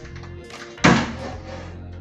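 A single heavy thump about a second in, as the plastic-wrapped mattress on a built-in storage bed is lifted and dropped back onto the bed frame, over background music.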